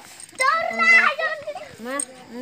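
A child calling out loudly in a high voice for about a second, starting about half a second in, among other talk.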